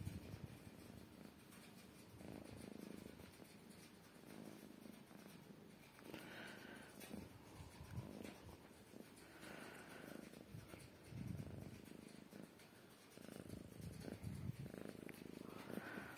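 Domestic cat purring close up, faint, the purr swelling and fading in a slow rhythm every couple of seconds.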